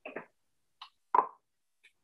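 A few short taps and scrapes of a brush working paste wax inside a small glass jar, the loudest a little past a second in.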